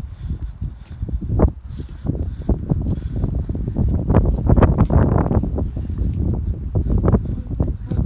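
Wind buffeting a phone's microphone in a dense low rumble, with handling knocks and rustle as the phone swings about.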